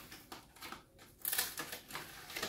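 Cardboard box of plastic wrap being handled and opened: a quick run of light clicks and crinkly rustles that grows louder in the second half.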